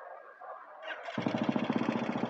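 Royal Enfield single-cylinder motorcycle engine starting about a second in, then running with a fast, even beat. The mechanic puts the engine's noise down to water in the oil, a noise he expects to go once the oil is fully changed.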